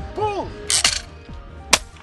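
A clay pigeon trap releases with a sharp, noisy clack just under a second in, then a single shotgun shot cracks out about a second later, over background music.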